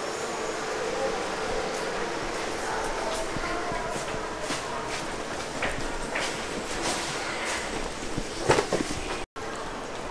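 Bangkok MRT Blue Line metro train: the steady rumble and hiss of the train running, heard from inside the car, with scattered clicks and a few louder knocks near the end.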